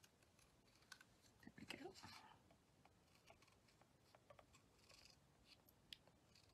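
Near silence, with faint light clicks and scratching of a Stampin' Blends alcohol marker working across stamped cardstock as a small image is coloured in.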